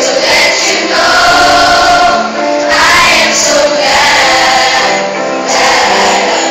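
A large choir of many voices singing together in chorus, with long held notes.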